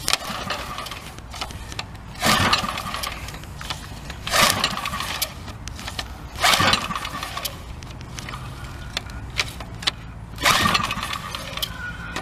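Recoil pull-starter of an 80cc Champion generator engine being yanked repeatedly, about every two seconds, with the rope whirring and the engine turning over without catching. The engine switch is still off.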